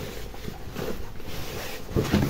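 Soft rustling of a large printed fabric wall tapestry as it is turned over, lifted and shaken out by hand.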